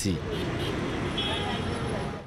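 Steady street traffic: cars and other motor vehicles running along a busy city road, an even low rumble with no single event standing out.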